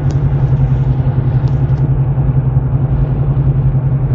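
Steady in-cabin drone of a Nissan Xterra cruising on a highway: engine and tyre noise with a strong, even low hum.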